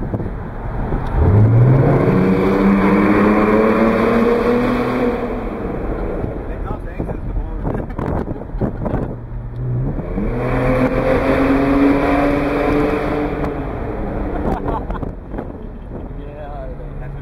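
BMW 530i engine accelerating hard twice in a tunnel: each time the note climbs quickly, keeps rising for a few seconds, then drops away as the throttle is lifted.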